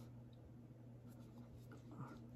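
Near silence: room tone with a steady low hum.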